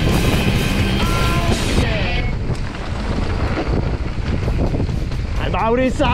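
Music for about the first two seconds, then cut off suddenly and replaced by steady wind rumble on a helmet-mounted action camera's microphone during a mountain bike descent. A voice calls out near the end.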